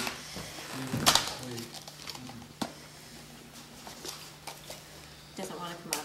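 A few sharp clicks and handling noises as a small pack of trading cards is worked open by hand, the loudest click about a second in. Faint murmured voices and a steady low hum sit underneath.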